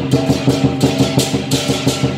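Chinese lion dance percussion: a large lion dance drum beaten in a fast, steady roll of about six or seven strokes a second, with cymbals crashing over it several times.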